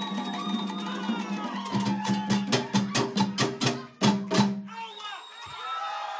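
Afro-Cuban percussion and singing: voices held over a dense run of sharp drum and wood strikes. The strikes stop about five seconds in, and the voices carry on briefly and fade.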